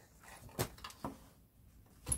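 Faint knocks and shuffling as the freed transfer box is handled, with one sharper knock about half a second in.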